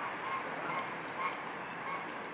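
Mute swans giving about five short honking calls spaced through the two seconds, over a steady background hiss.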